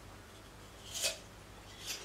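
Two short, crisp crunches of raw apple about a second apart, the first the louder.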